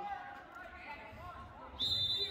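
Spectators' voices, then near the end a referee's whistle cuts in with one sharp, steady high blast that keeps going. It is the signal that the wrestling match is over on a pin.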